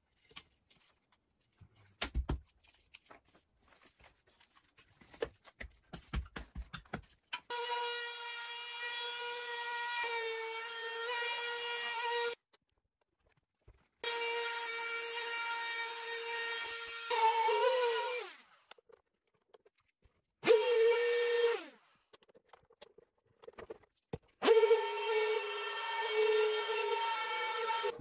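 Small edge router cutting 10 mm plywood to a template. It runs in four spells from about a quarter of the way in, each a steady high whine that sags briefly under load and falls away as the motor stops. Before that come scattered knocks and clicks of handling the workpiece.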